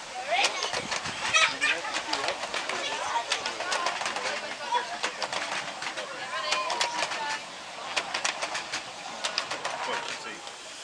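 Miniature railway passenger carriages rolling past, their wheels clicking in quick, irregular succession over the rail joints, with passengers' voices.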